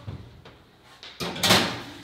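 An oven door and a metal sheet pan being handled as the pan goes into the oven: a soft knock at the start, then a louder clatter of door and pan past halfway.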